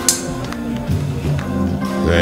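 Live band playing jazz, with a steady bass line and held notes and a sharp percussive hit just after the start.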